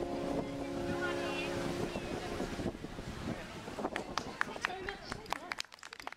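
Acoustic guitar chords ringing out and dying away, then outdoor street noise with voices and a run of sharp clicks near the end as the sound fades out.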